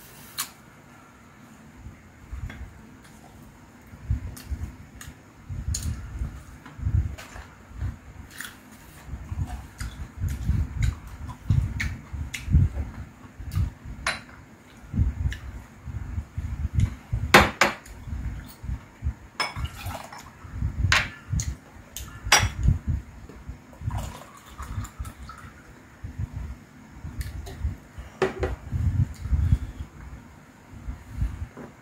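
Close-miked eating: chewing food in repeated low pulses, with sharp clicks of chopsticks and glassware against dishes. About halfway through, soju is poured from a glass bottle into a shot glass.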